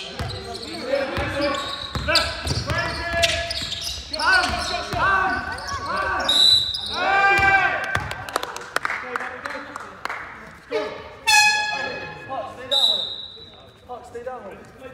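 Basketball game sounds in a sports hall: a ball bouncing on the wooden court and quick footfalls, with players shouting and echoing through the hall. Two short high-pitched tones sound about midway and near the end.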